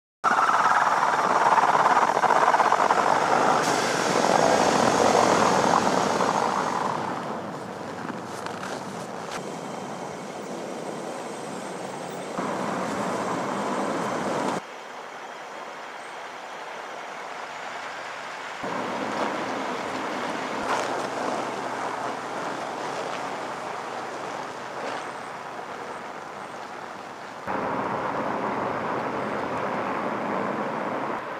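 Vehicle driving on a snow-covered road: steady engine and road noise with no clear tones, loudest for the first several seconds. The level jumps up and down abruptly a few times.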